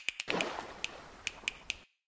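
Title-sequence sound effects: a noisy swell that fades away, with sharp clicks scattered through it, cutting off shortly before the end.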